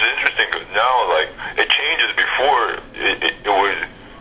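Speech only: a person talking in a conversation.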